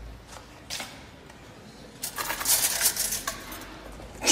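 Metal spoons clinking and rattling against each other in a quick cluster of light strikes about two seconds in, after a single soft click near the start.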